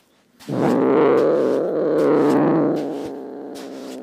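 A cat sound effect: one long, low, drawn-out cat vocalisation starting about half a second in. It is loudest over the first two seconds or so, then softer towards the end.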